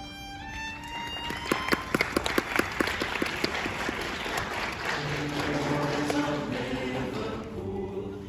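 A violin plays a quick rising run of notes, followed about a second and a half in by a burst of sharp claps. From about five seconds in, the low male voices of a choir of tenors and basses come in on sustained notes.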